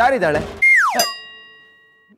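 Comic sound effect: a quick falling whistle, then a bell-like ding that rings on and fades away over about a second.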